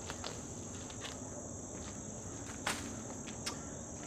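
Steady high-pitched chorus of summer insects, with a few brief clicks and rustles scattered through it.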